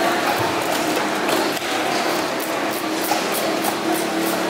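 A large knife working on a big fish on a wooden chopping block: a quick run of short scraping strokes, about four a second, in the second half, over the steady din of a busy market.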